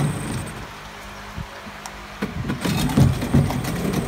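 Mariner 8 HP (Yamaha-built) two-cylinder two-stroke outboard idling, then shut off about half a second in and running down. After a single knock, it is pull-started a little after two seconds and catches at once, settling back to a steady idle; a sign of an easy-starting motor in good tune.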